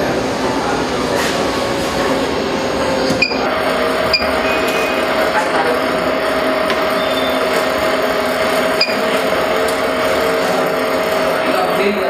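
BGA rework station running with a steady noise. A steady hum sets in about three seconds in, and short electronic beeps come a few times, around three and four seconds in and again near nine seconds.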